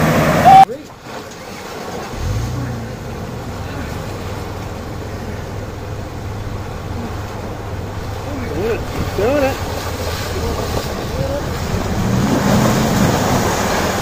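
A four-wheel-drive's engine running steadily as it pushes through a deep creek crossing, water sloshing around it, after an abrupt cut about half a second in.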